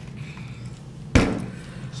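Plastic water bottle being handled, with one sharp knock about a second in.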